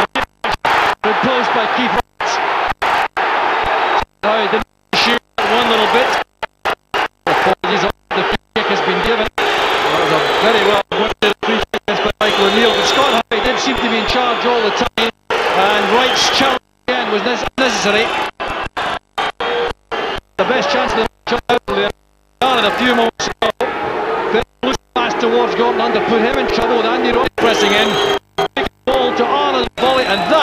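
Football stadium crowd noise and voices on an old broadcast soundtrack, repeatedly cut by brief, complete dropouts, often more than once a second, from a damaged recording.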